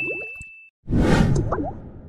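Graphic-transition sound effects: a bright held tone with quick rising blips that fades out, then after a brief gap a louder whoosh with rising chirps that trails away.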